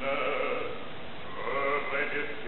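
An operatic voice singing sustained notes with a wide vibrato, sliding to a new note about one and a half seconds in.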